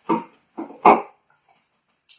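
A dog barking, three short barks within about a second.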